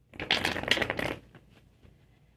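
A deck of tarot cards being shuffled by hand: one dense, rapid flutter of card edges lasting about a second.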